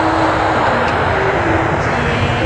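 Jet airliner flying overhead, a loud steady rush of engine noise that eases near the end, over background music with long held notes.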